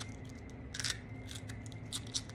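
Striped skunk chewing on a raw red bell pepper held in her paws: a run of small, irregular crunching clicks, with one louder crunch just under a second in.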